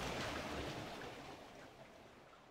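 A water-splash sound effect dying away: a rushing, watery wash that fades steadily toward near silence.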